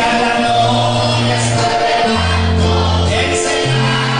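Live gospel worship music: a man singing through a microphone, backed by acoustic guitars, over held bass notes that change about every second.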